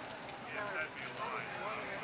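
Hoofbeats of a horse cantering on arena sand, under indistinct background chatter of people's voices.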